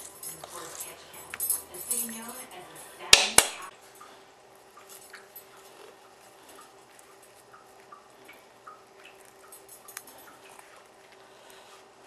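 Kitchen utensil clinking and scraping against a dish as mashed potatoes are spooned onto a pie, with two sharp knocks about three seconds in; after that only faint light ticks and scraping.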